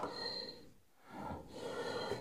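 A man breathing out heavily through the nose, followed by the soft rustle of a comic book's paper pages as his hand turns them.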